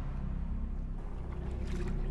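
A low, steady rumbling drone, with faint rustling higher up near the end.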